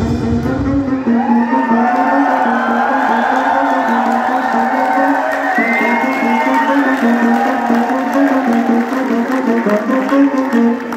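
A live band's drums and bass stop about a second in, leaving a held low synthesizer note while the audience cheers.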